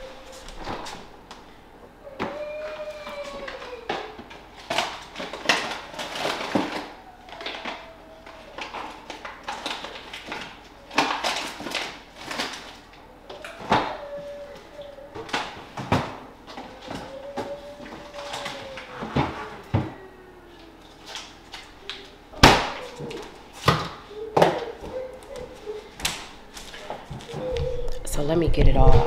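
Kitchen clatter: a string of sharp knocks and clicks as the refrigerator door is opened and items are handled, the loudest knocks coming near the end. Several drawn-out tones that rise and fall in pitch sound among them.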